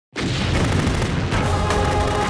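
A deep cinematic explosion boom starting suddenly, followed by a heavy low rumble. Dramatic music with held notes comes in about a second and a half in.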